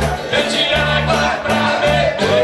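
Live band playing a Paraná regional country song, led by a piano accordion with acoustic guitar, electric bass and a shaken tambourine keeping a steady beat.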